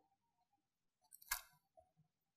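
Near silence: quiet room tone, broken once, a little past the middle, by a single short click.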